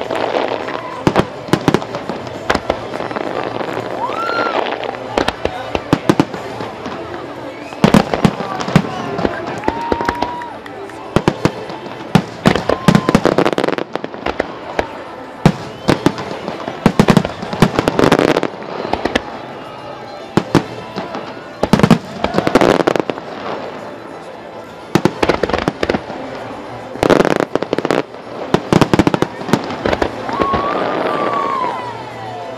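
Aerial fireworks shells bursting in rapid, irregular succession, sharp reports and crackle coming in dense volleys several times over.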